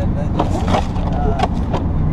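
Chevrolet Silverado 3500's Duramax 6.6 L LB7 V8 turbo-diesel running steadily, heard from inside the cab. A few short knocks and rattles come about half a second in and again near the end.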